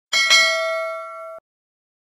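Notification-bell ding sound effect: two quick strikes close together, then the bell rings on, fading, and cuts off suddenly a little over a second in.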